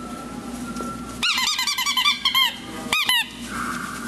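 Labrador retriever puppies yelping while they wrestle: a quick run of short, high squeals starting about a second in, then a few more near the three-second mark.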